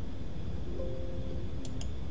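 Steady low background hum, then two quick clicks close together near the end, from a computer mouse button.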